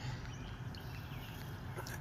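The 1998 Jeep Grand Cherokee's engine idling steadily, heard as a low hum from inside the cabin.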